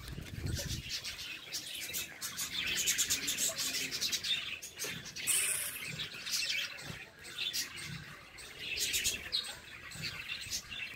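A flock of caged parrots chirping and chattering, many short high calls overlapping continuously.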